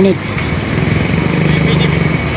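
Motor vehicle engine running close by on the road, a steady hum that grows a little stronger near the end.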